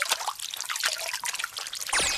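Kkakdugi (radish kimchi) juice being poured from a brass bowl into a bowl of soup: a steady, gushing, splashing trickle of liquid, loud enough to sound like a waterfall.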